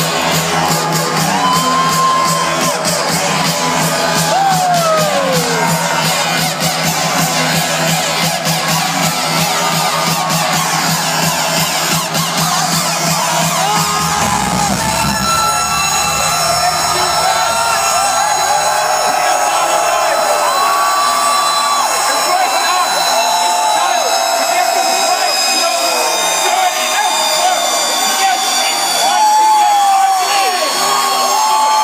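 Electro house DJ set playing loud over an arena sound system, with a heavy bass line. About halfway through, the bass drops out and high sustained synth tones carry on. The crowd cheers throughout, with many individual yells.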